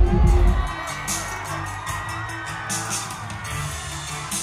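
Pop music playing through a concert venue's sound system, with an audience cheering. A heavy bass beat drops out less than a second in, leaving lighter music under the crowd.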